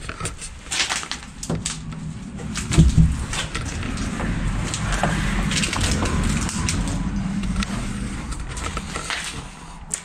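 Footsteps and body movement over a debris-strewn floor, with rustling and handling noise on the body-worn camera. Scattered knocks and crunches are heard, the loudest about three seconds in, over a low rumble.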